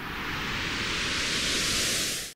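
A whoosh sound effect: a swell of hiss-like noise that grows steadily louder and brighter.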